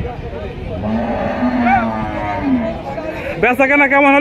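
One long moo from cattle, starting about a second in and lasting nearly two seconds, with a brief rise in pitch midway.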